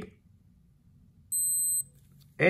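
Casio G-Shock MRG-G1000 wristwatch giving one high electronic beep about half a second long, a bit over a second in. The beep confirms the held C button has registered and switched the watch out of airplane mode.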